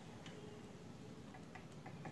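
Faint, scattered ticks and light scratches of a ballpoint pen on paper as short lines of a graph are drawn, over a quiet room hiss.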